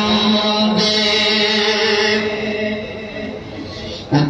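A man chanting a Pashto naat, holding one long note early on, then further sustained tones that fade away over the second half.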